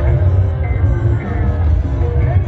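Loud kecimol-style Sasak dance music blasting from large outdoor loudspeaker stacks, with a heavy, steady bass.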